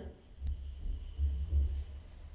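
Dead air on an open phone line where no caller answers: a low, uneven hum that swells and fades, with faint steady high whines.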